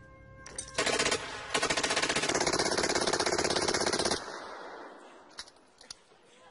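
Machine gun firing in automatic bursts: a short burst about a second in, then a long rapid burst of about two and a half seconds that stops abruptly.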